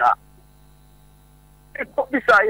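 A steady low electrical hum runs under the recording, heard on its own in a pause of about a second and a half between bits of speech.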